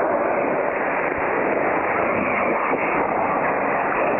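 Shortwave AM reception through an Icom IC-R75 communications receiver: a steady rush of static and noise, with no clear programme audio standing out, cut off above about 3 kHz by the receiver's narrow filter.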